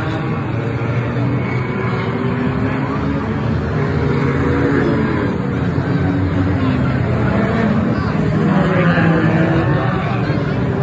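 A pack of four- and six-cylinder enduro stock cars racing on an oval track, many engines running at once with their pitches rising and falling as cars pass. It gets louder near the end as the cars come by close.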